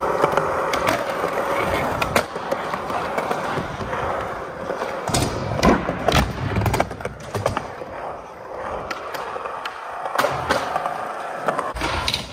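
Skateboard wheels rolling steadily over a skatepark's concrete floor. Several sharp clacks of the board cut through at intervals.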